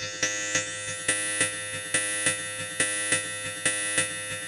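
Progressive psytrance breakdown: a pulsing synthesizer pattern over sustained pads, with no kick drum. A filter sweep rises and levels off about a second in.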